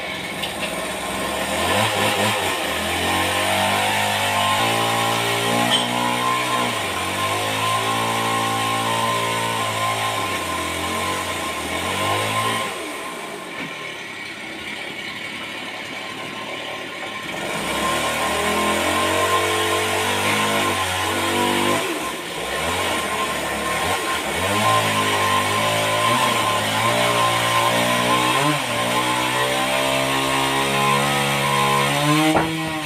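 Band sawmill machinery running, with an engine-like note that shifts in pitch. It drops and runs quieter about twelve seconds in, then climbs back up about five seconds later.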